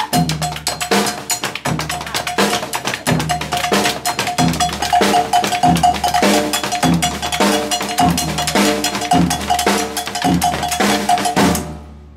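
Stick-dance percussion: long wooden staffs and short hand sticks knocked together in a fast, dense rhythm, with a high ringing note repeating rapidly and deeper drum strokes about every half second. The playing stops abruptly near the end.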